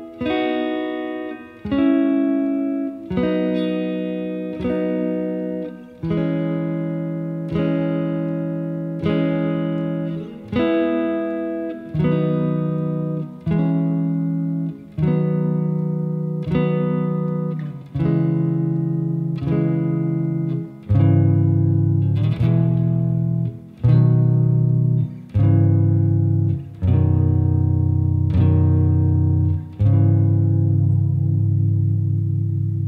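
Fender Custom Shop '56 reissue Stratocaster played clean on the neck pickup with a little reverb: triad chords picked through a C♯ minor, E, B progression, one struck about every second and a half and left to ring. About two-thirds of the way in the shapes move lower on the neck and deeper notes join.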